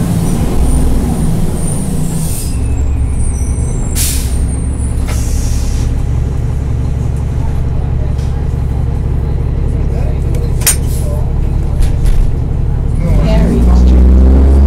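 Onboard a NABI 40-SFW transit bus: the Cummins M-11 inline-six diesel winds down as the bus slows, with a thin brake squeal and short air hisses from the brakes and air system, then idles steadily. Near the end the engine revs up as the bus pulls away.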